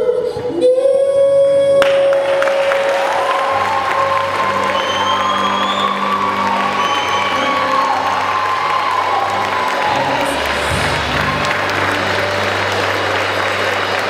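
A woman's voice holds a long final note over the band, then about two seconds in the audience breaks into applause and cheering, which carries on over the band's sustained chords.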